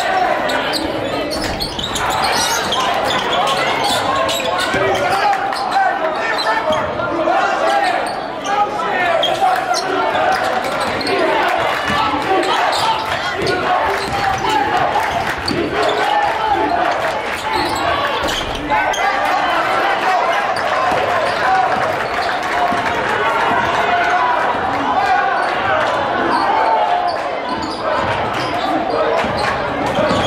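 Basketball dribbled and bouncing on a gym's hardwood floor during live play, with many short knocks, over a steady din of indistinct voices from players and crowd echoing in the large hall.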